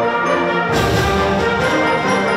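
School wind band playing held brass and woodwind chords in a march-like school song. Under a second in, the full band comes in and the sound grows fuller and brighter.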